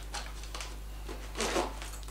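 A low steady hum, with a brief rustle of the fabric sling bag being handled about one and a half seconds in.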